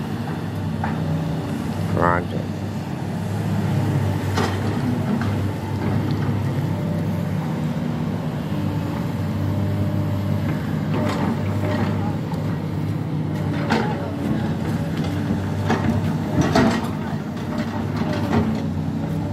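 Tracked hydraulic excavator's diesel engine running steadily, with a few sharp clanks and scrapes as the bucket digs into dirt and rubble.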